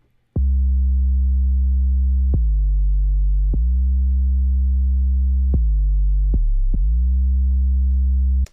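Sub bass sample played from a software sampler: a deep, sustained bass line of about six notes, each starting with a short click and sliding briefly into its pitch, every note held until the next.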